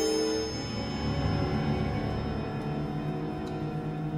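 Symphony orchestra playing slow, sustained music: a held chord dies away about half a second in, leaving soft, low sustained notes.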